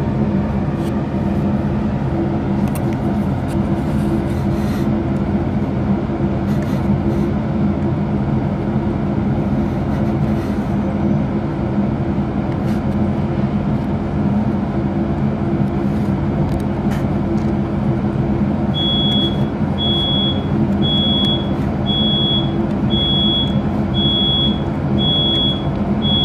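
Steady machine hum of running equipment, a low drone with a few faint clicks. About three quarters of the way through, a short high electronic beep starts repeating about once a second.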